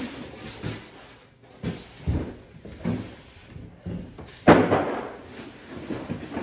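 Irregular knocks and rustles of objects being handled, coming about once a second, the loudest about four and a half seconds in.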